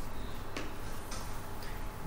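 A few faint ticks over a steady low hum and hiss of room noise.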